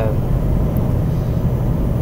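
Steady low engine and road rumble inside a moving vehicle's cab at highway speed.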